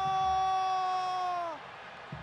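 A football commentator's long drawn-out shout held on one note as a goal goes in; it bends down and stops about one and a half seconds in. Low stadium crowd noise runs underneath.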